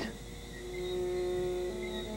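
Soft background music of sustained, held notes. One note holds steady for about a second, and a new set of notes comes in near the end.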